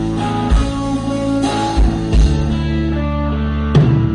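Live rock band playing an instrumental passage: guitar chords held over bass, with kick-drum beats and a crash near the end.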